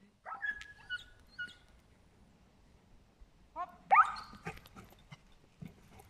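Dog barking in short bursts: a first cluster about half a second in, the loudest bark about four seconds in.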